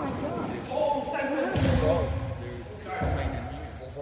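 Soccer ball being kicked and striking the walls during play in an echoing sports hall, two heavy thumps about a second and a half in and again about three seconds in. Players' shouts carry faintly underneath.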